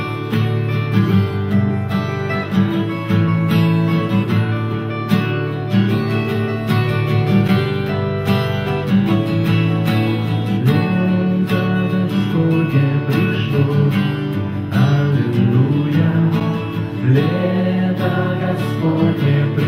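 Two acoustic guitars played together, a steady strummed accompaniment in an instrumental passage of a worship song.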